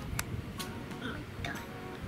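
Wet Head game's wind-up timer ticking, a few sharp ticks a second, over quiet background music.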